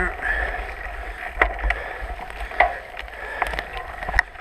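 Mountain bike rolling over a rough dirt single track: continuous tyre and trail noise with a low rumble of wind on the microphone, and several sharp knocks and clicks as the bike jolts over bumps.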